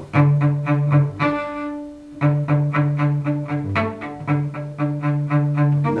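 Solo cello playing short, detached low notes in an even rhythm of about four a second, with one longer, higher note about a second in. It is a passage meant to portray thieves sneaking around.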